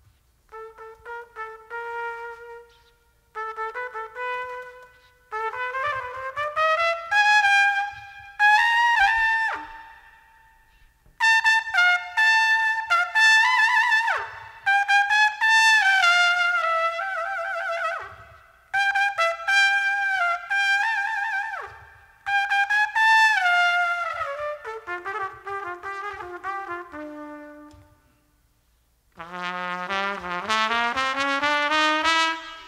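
Solo jazz trumpet playing unaccompanied, in fast phrases that climb high, broken by short pauses. Several phrases end in a quick drop in pitch. Near the end the line steps down into lower notes.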